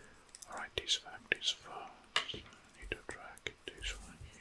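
A man whispering in short breathy phrases, with small sharp clicks between them.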